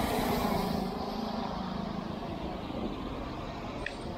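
Road traffic: a motor vehicle going by, a steady engine hum with tyre noise, loudest in the first second and then easing off.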